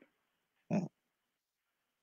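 A single short grunt-like vocal sound from a person, like a brief 'mm', about two thirds of a second in, coming over a video call; the rest is near silence.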